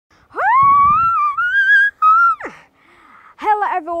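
A child's high-pitched voice: a long rising shout, then a shorter one that drops off sharply, before ordinary speech starts near the end.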